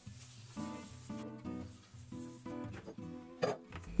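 Quiet background music with plucked guitar notes.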